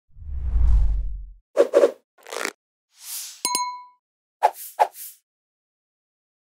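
Sound effects for a subscribe-button animation. A low whoosh swells and fades in the first second and a half, followed by a series of short pops and swishes. About three and a half seconds in there are two sharp clicks and a brief bell-like ding, then more pops and a swish near the end.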